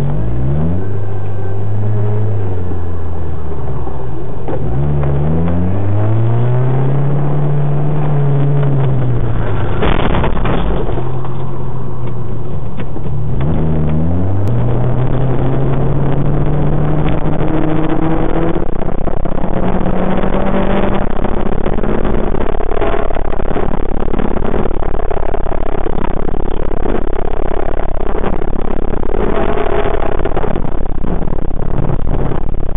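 Car engine heard from inside the cabin, accelerating hard up through the gears: the revs climb, fall back at a shift about five seconds in and again about thirteen seconds in, then hold high and steady at speed. A single sharp knock about ten seconds in.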